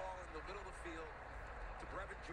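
Faint speech in a lull, a few soft words barely above a steady low hum.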